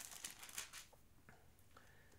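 Faint rustle of thin Bible pages being turned during the first second, then near silence.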